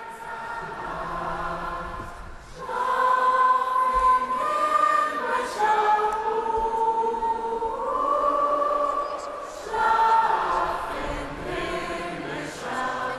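A large crowd of football supporters singing a Christmas carol together in long held notes. The singing swells about two and a half seconds in and again near the end as a new phrase begins.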